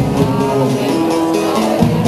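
Acoustic guitars playing live, strummed and ringing chords in a steady song accompaniment.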